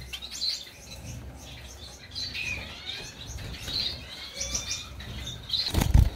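Small cage finches chirping, with short high tweets and thin sliding whistles scattered throughout. A couple of sharp knocks near the end are the loudest sounds.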